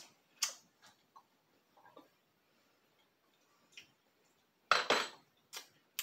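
A few light, separate clinks of a spoon against a glass mixing bowl. A louder clatter comes about five seconds in.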